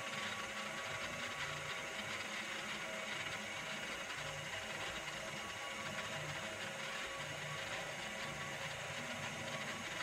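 A 1998 Shoptask XMTC Gold lathe-mill combo running under power, a steady mechanical whine with gear noise from its drive, with a faint low pulse about once a second, as the spinning chuck turns a brass part for center drilling.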